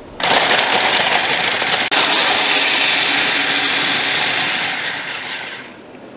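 A small electric food processor running, its blade chopping dried jerky into powder. The steady motor-and-blade noise starts suddenly, runs evenly, and fades out near the end.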